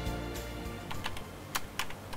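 Typing on a laptop keyboard: several separate keystrokes in the second half. Background music fades out over the first second.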